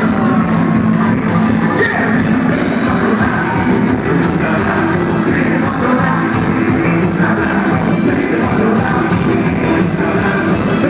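Loud live band music with vocalists singing into microphones, played through the venue's PA and recorded from within the crowd.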